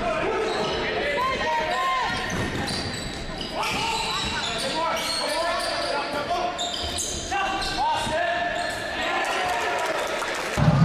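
Basketball game sounds in a gym: the ball bouncing on the hardwood floor, sneakers squeaking in short, high chirps, and players' voices echoing in the hall.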